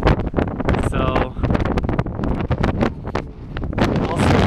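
Strong wind buffeting the camera's microphone in irregular gusts, a loud low rumble throughout.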